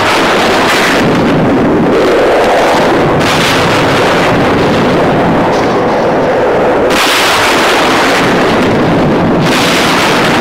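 Film sound effect of explosions: a loud, continuous rumbling roar with several sharper blasts breaking through it.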